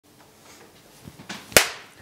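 Intro logo sound effect: a short build of swishing noise, then a single sharp hit about one and a half seconds in that dies away quickly.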